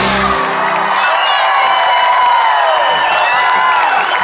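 A live band's song ends about half a second in, and a large crowd cheers and whoops.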